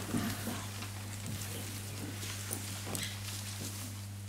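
A roomful of people rising from their chairs: chairs shifting, shoes on a wooden floor, scattered knocks and rustling that thin out as everyone stands still for a minute of silence. A steady low hum runs underneath.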